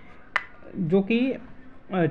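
A voice narrating in Hindi pauses, with one short sharp click about a third of a second in, then speaks two words.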